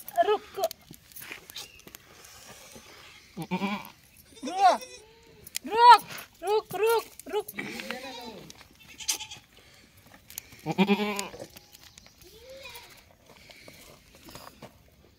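Goats bleating: a run of short calls in the middle, loudest about six seconds in, then one more call near the end.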